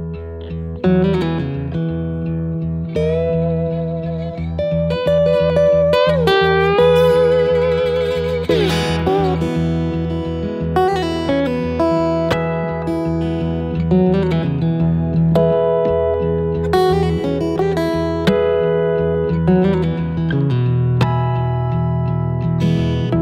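Acoustic guitar in open E tuning, fingerpicked with a slide: low open bass strings ring under a plucked melody. Slid, wavering notes come through the middle stretch.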